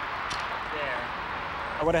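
Steady outdoor background hiss with a faint voice in the middle, then a man starts speaking near the end.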